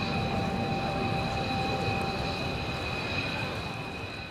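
A Mitsubishi F-15DJ fighter's twin Pratt & Whitney F100 turbofans running as the jet rolls along the runway: a steady high turbine whine over a broad rumble, slowly fading.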